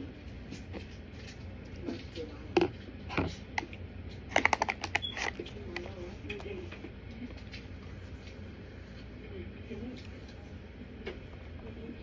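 Chewing a mouthful of raw Kingsford's corn starch: a couple of sharp crunches two to three seconds in, then a quick run of crackling crunches about four and a half seconds in.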